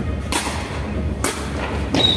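A sepak takraw ball being kicked and played, giving three sharp thuds that ring in a large sports hall. The last thud comes as a player kicks the ball at head height.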